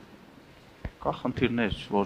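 Speech: after a pause of about a second, with a single faint click, talk resumes.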